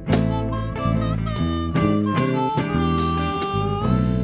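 Blues band playing an instrumental fill between vocal lines: a harmonica plays held and bent notes over electric guitar and the rest of the band.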